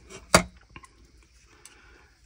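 A single sharp click about a third of a second in as a laptop's copper heatsink and fan assembly is set down, followed by a few faint ticks of handling.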